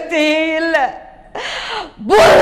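A woman's voice drawing out one long vowel at a steady pitch for most of a second, falling off at the end, followed by a shorter vocal sound.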